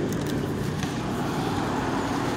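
Wind blowing across the phone's microphone: a steady rushing noise with a low rumble underneath.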